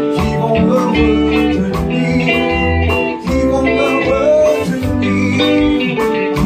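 Live band playing together: electric guitar over bass guitar and keyboard, with a steady drum-kit beat.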